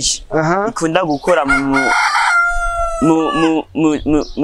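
A rooster crows once in the background, about halfway through, its call ending in a long, slightly falling note. A man is talking before and after it.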